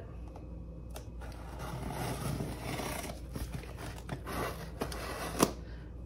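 A scissors blade drawn along the packing tape on a cardboard box, slitting the tape with a scraping, tearing sound. A sharp click comes near the end.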